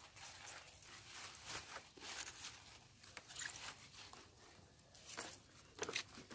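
Freshly cut lettuce leaves rustling and crackling faintly as they are gathered up by hand and put into a woven bamboo basket, with a slightly louder rustle near the end.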